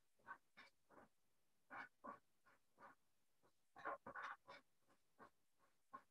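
Faint, short scratching strokes of a felt-tip pen on card as small daisy flowers are drawn, coming in quick clusters with near silence between them.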